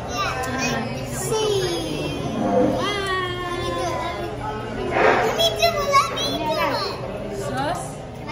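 Excited children's voices calling out and chattering over one another, with adults talking in the background; the loudest outbursts come about five to six seconds in.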